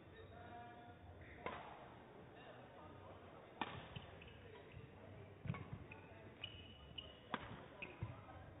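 Badminton rally: a racket striking a feather shuttlecock four times, sharp hits about two seconds apart that ring briefly in a large hall, with short high shoe squeaks on the court floor between the hits.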